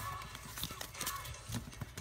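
Trading cards being handled and set down on a tabletop: a few light, irregular clicks and taps.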